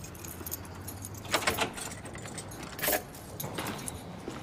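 Keys jangling and a few short metallic clicks as a door is locked with a key, the loudest click about three seconds in.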